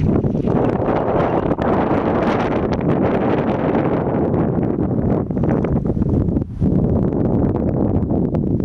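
Wind buffeting the microphone: a loud, uneven rush with a brief lull about six and a half seconds in.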